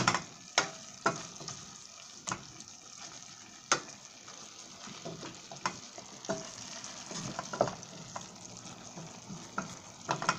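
Chicken and celery frying in a stainless steel pan with a steady sizzle while being stirred, with irregular sharp knocks as the stirring utensil strikes the pan.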